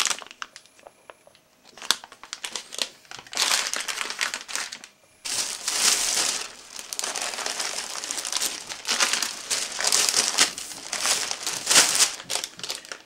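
Thin plastic shopping bag rustling and crinkling in irregular bursts as hands rummage in it and lift it. It is fairly quiet for the first two seconds, then the crinkling runs on with a short pause about five seconds in.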